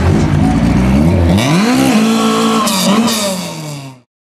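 Lada 2101 rally car's four-cylinder engine revving as it pulls away, rising in pitch about a second and a half in, then holding and sinking as the sound fades out near the end.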